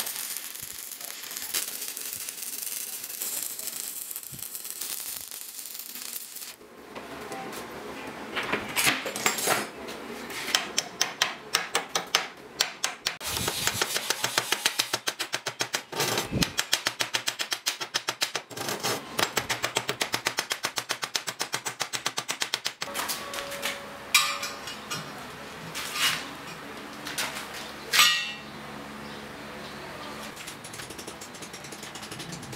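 Stick-welding arc crackling steadily for about six seconds, then a chipping hammer rapping slag off the fresh weld on a steel plate in quick strikes, about three a second. Near the end come a few single, louder strikes.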